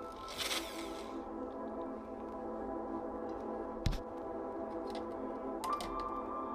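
Background ambient music with long held tones. Near the start comes a brief whirring burst from an electric drill boring into an aluminium profile, and one sharp knock about four seconds in.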